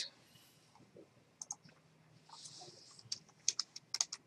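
Faint computer mouse clicks: a pair about a second and a half in, then a quick run of clicks near the end, with a brief soft hiss in between.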